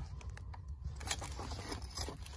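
Faint handling noise, a few light clicks and rustles as a hand moves an RF control module and the phone filming it, over a steady low hum.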